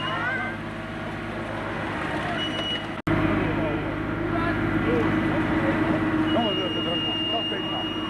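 Wheeled hydraulic excavator's diesel engine running steadily under load as it works, with people talking over it. The sound drops out for an instant about three seconds in, at a cut.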